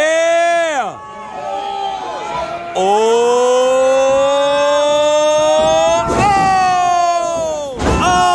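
A single loud voice holding long drawn-out shouts: one falling in pitch at the start, then a long one slowly rising and held for several seconds. A sharp thud from the wrestling ring breaks in about six seconds in, and another comes right at the end.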